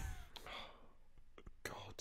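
Faint, breathy vocal sounds from a person, a short one at the start and another just before the end, with quiet room tone between.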